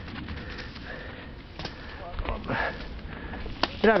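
Low rustling and a few sharp clicks from a mountain bike moving along a narrow, brushy dirt trail, with a faint voice about two seconds in.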